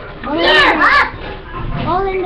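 Children's high-pitched voices, loud and sliding in pitch for about half a second just after the start, with a quieter voice near the end; no clear words.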